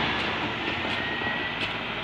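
Rushing noise of a passing vehicle, fading slowly, with a faint thin whine about halfway through.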